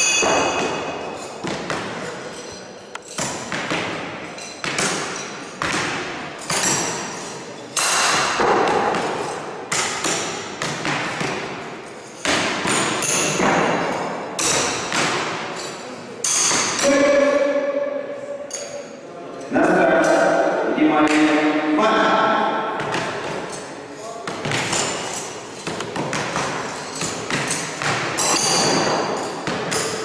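Throwing knives hitting wooden target boards in quick succession: a run of sharp thuds, about one a second or faster, some with a short metallic ring.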